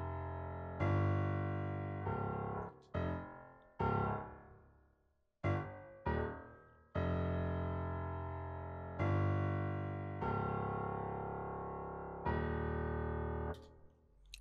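A software keyboard instrument in FL Studio plays a slow line of single low bass notes. Each note starts sharply and fades, and there is a brief silent gap about five seconds in. These are the bass notes laid down in F minor as the foundation of a chord progression.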